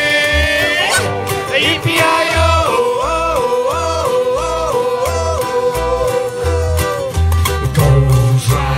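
Ukulele group playing strummed chords under a melody line that holds one long note, then steps up and down about once a second before settling.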